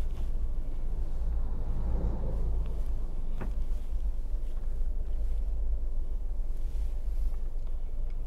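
Steady low wind rumble on the microphone as the camera moves along the road, with a brief swell of noise about two seconds in and a single sharp click near the middle.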